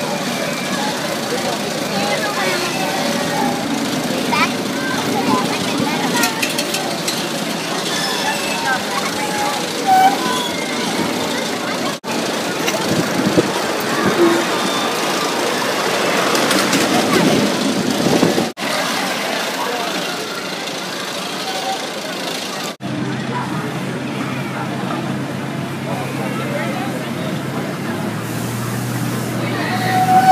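Amusement park ambience: background chatter of voices mixed with the running of ride machinery, broken by three abrupt cuts. A steady low hum comes in for the last few seconds.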